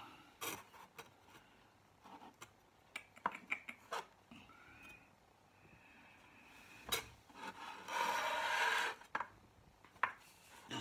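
Thin glass panes being handled and fitted together on a table: scattered light clicks and taps, a sharper click about seven seconds in, then a rubbing scrape lasting about a second near the end.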